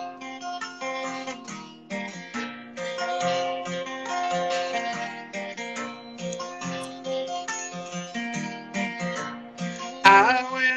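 Acoustic guitar played solo, chords picked and strummed in a steady rhythm as the introduction to a song.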